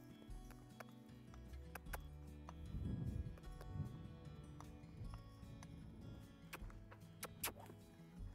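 Soft background music with long held notes, played quietly. Faint hoofbeats of a horse loping on sand sound beneath it.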